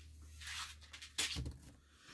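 Quiet handling noise: a soft rustle and then a single sharp click about a second in, over a low steady hum.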